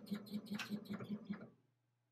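Laser engraver chattering in a steady rhythm of about six pulses a second, its controller board having crashed mid-job. It stops abruptly about one and a half seconds in, as the machine loses power, leaving only a faint low hum.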